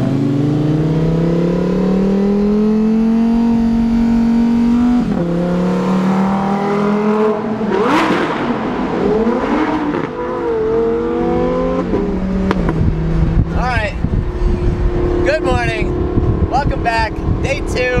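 Sports car engines accelerating, heard from inside an open-top convertible. The engine pitch climbs steadily for about five seconds, drops at a gear change, then climbs again, with a sharp burst about eight seconds in.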